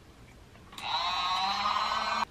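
Small battery-powered mini washing machine's motor switching on about three quarters of a second in, rising briefly in pitch as it spins up, then whirring steadily as it turns the tub with plain water only.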